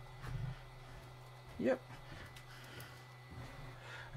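Quiet room tone with a steady low hum and a couple of very faint light clicks.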